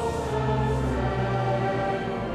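Choir and congregation singing a Dutch hymn together in slow, held notes, on the line 'de donk're bossen zwijgen'.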